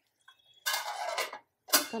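A stainless steel lid being set onto a metal kadhai: a short scrape of metal on metal, then a sharp clank near the end with a brief metallic ring.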